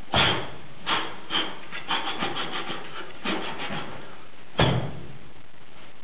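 Irregular sharp clacks and hits from a Tog Chöd sword form: single strikes about half a second apart, a quick rattle of clicks in the middle, and a heavy hit about three-quarters of the way through.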